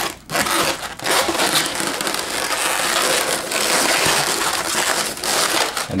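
Latex twisting balloons rubbing against each other and against the hands, a steady dense friction noise, as a black 260 balloon is wrapped around pinch twists to form a wheel.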